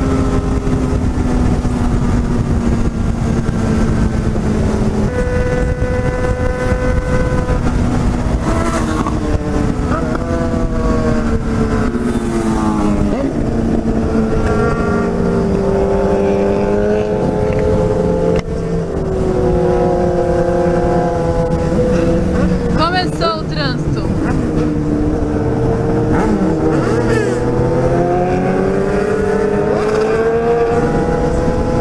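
Yamaha XJ6 inline-four motorcycle engine heard from the rider's seat at cruising speed, its pitch rising, falling and stepping with throttle and gear changes. Heavy wind rumble on the microphone underneath. About 23 seconds in, a brief burst of quickly sweeping higher engine notes is heard.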